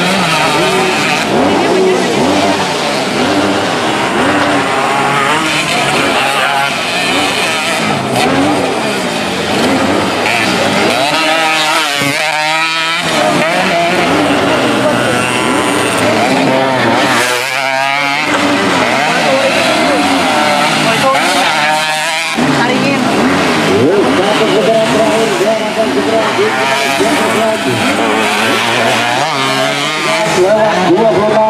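Several racing motorcycles on a dirt track, their engines revving hard, the pitch climbing and falling again and again as they accelerate and shift, overlapping one another. The sound eases briefly about twelve and seventeen seconds in.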